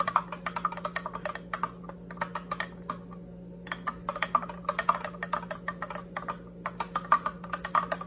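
Metal spoon stirring a drink in a glass tumbler, clinking rapidly against the sides, several clinks a second, with a brief pause about three seconds in. The powdered protein drink mix is being dissolved in warm water.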